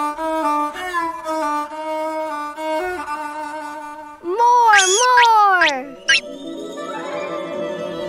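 Background string music with a violin melody. About four seconds in, a loud, wordless vocal exclamation from a cartoon character slides up and back down in pitch, and softer music follows.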